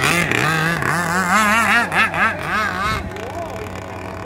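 Engine of a radio-controlled racing boat running at high speed, its pitch wavering up and down several times a second as the hull skips over the water. The sound weakens about three seconds in as the boat runs off.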